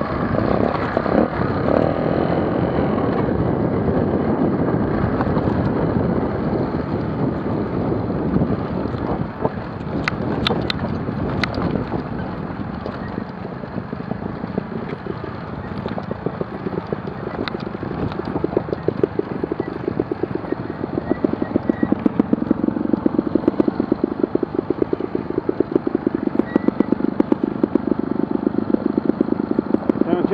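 Trials motorcycle engines running at low revs down a rocky trail, with a few sharp knocks about a third of the way in. In the last third the near engine settles into a fast, even beat of firing pulses.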